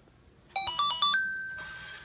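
Game Craft 'My Intelligent Laptop' toy computer beeping a short electronic jingle through its small speaker: a quick run of stepped beeps about half a second in, ending on one held beep that fades away.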